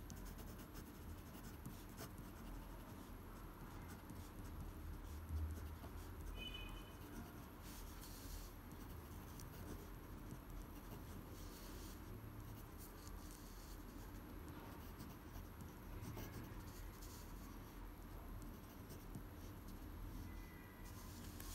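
Pen scratching faintly across paper in quick irregular strokes as cursive handwriting is written, with one soft low bump about five seconds in.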